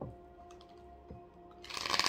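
Soft background music of steady held tones, with a short rustle of tarot cards being cut near the end.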